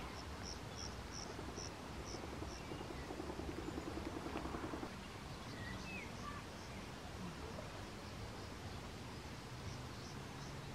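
Faint outdoor countryside ambience at dusk: a soft steady background with a short, high chirp repeated about six times over the first couple of seconds, and a few brief thin bird-like calls later.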